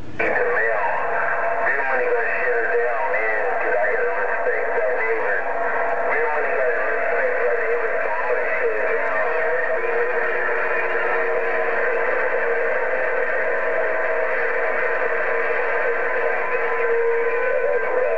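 CB radio speaker receiving on 27.085 MHz (channel 11): several distant stations come in at once, their voices overlapping and garbled in thin, narrow radio audio. Steady whistle tones from signals beating against each other run under the voices.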